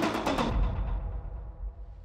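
Background electronic music with a steady drum beat, which stops about half a second in and then fades away.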